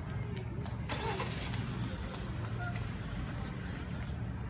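A small SUV driving past at low speed, its engine and tyres making a steady low hum, with a brief hiss about a second in.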